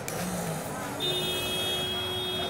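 A vehicle horn sounding one steady, held note that starts about a second in and lasts about a second and a half, over background noise.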